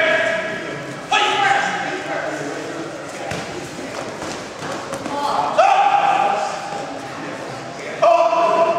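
High-pitched shouts (kiai) from women karateka sparring, each starting sharply and held for under a second: one fading out at the start, one about a second in, one about five and a half seconds in. Light thuds of feet on the wooden gym floor come between the shouts.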